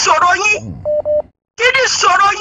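Speech, broken about a second in by two short electronic beeps at the same pitch, one straight after the other.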